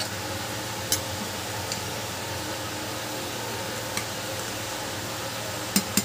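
Rice boiling in a pot of water: a steady bubbling hiss, with a few light clicks and two sharper ones near the end.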